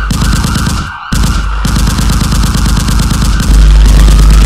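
Intro sound effect of rapid rattling fire, like a machine gun, breaking off briefly about a second in, with a deep bass rumble that swells about three and a half seconds in.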